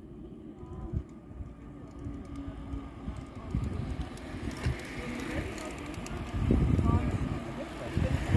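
Touring bicycles riding past close by in a long column, with riders' voices in passing and wind buffeting the microphone. The sound grows loudest near the end.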